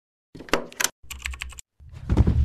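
Keyboard typing clicks in two quick runs, each about half a second long, with a louder, deeper sound swelling in near the end.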